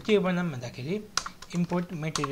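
Computer keyboard keys clicking as a line of code is typed, under continuous talking.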